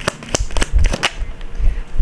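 Tarot cards being handled and dealt: a quick run of about five sharp card snaps in the first second, then quieter handling as a card is laid down on the cloth-covered table.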